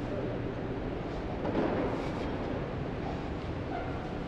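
Steady rustling and rumbling handling noise from a body-worn camera rubbing against clothing as the wearer moves, with a brief swell about a second and a half in.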